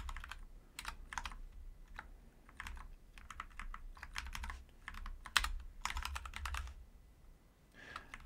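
Computer keyboard being typed on in short, irregular spurts of keystrokes with pauses between them, including a quick run of keys about six seconds in.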